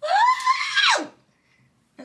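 A woman's high-pitched vocal exclamation, "Ah!", about a second long, rising in pitch and then dropping off sharply.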